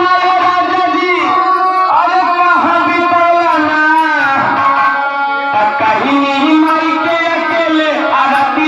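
A Bhojpuri devotional song sung live by a man into a microphone, with gliding vocal lines over sustained instrumental accompaniment and a hand drum.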